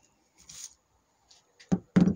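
Handling noise from parts on a plastic-sheeted bench: a brief rustle about half a second in, then a quick cluster of three short, low knocks near the end.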